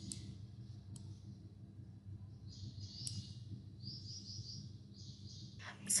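Faint computer-mouse clicks, three sharp ones while the 3D view is rotated, over a low steady hum, with soft high chirping in the background.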